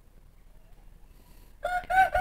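Near silence, then about a second and a half in a rooster starts crowing, a loud held call.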